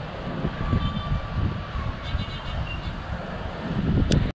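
Wind buffeting the microphone as a gusty low rumble, over faint traffic noise from the town below, with a few faint high tones about one and two seconds in.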